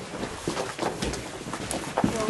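A few light knocks and shuffling as a small group moves about inside a wooden shed.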